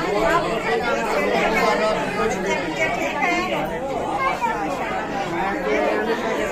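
Lively chatter: several people talking over one another at once, no single voice standing out.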